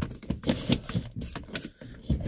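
Irregular series of short clicks and knocks from a phone being handled and repositioned by hand.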